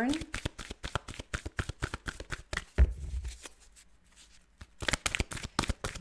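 A deck of oracle cards being shuffled in the hands, making a rapid patter of card flicks. About three seconds in there is a single low thump, and after a short pause the shuffling starts again.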